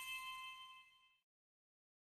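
A single bright, bell-like chime ringing out with several steady high tones, fading and dying away about a second in.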